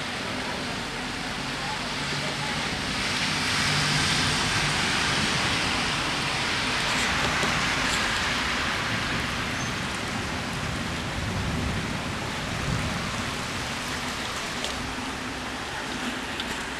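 Heavy rain falling on a wet street, a steady hiss that swells louder for several seconds in the middle.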